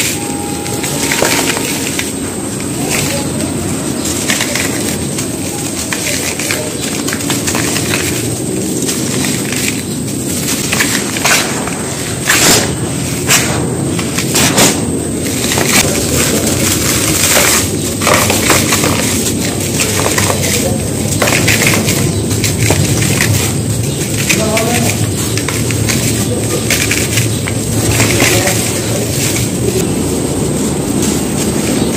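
Dry sand-and-dirt bars crumbled by hand into a dry plastic bucket: continuous crunching and sifting of powdery dirt, broken by sharp cracks as chunks snap off, most often in the middle of the stretch.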